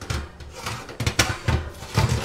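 Oven rack and baking pan clattering as they are handled in an open electric oven: a quick run of about half a dozen knocks and scrapes.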